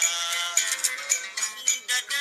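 Music: a Somali song, with a singing voice over accompaniment and crisp clicking percussion.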